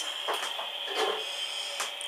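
Quiet room tone with a steady high-pitched whine and a few soft knocks.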